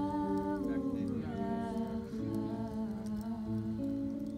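Women's voices humming a slow melody in long held notes, with a steady lower note beneath, and a light crackling of the wood fire.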